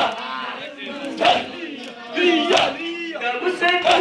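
A nauha, a Shia lamentation chant, sung by a crowd of men. A loud chest-beating (matam) stroke falls in time with it about every second and a quarter.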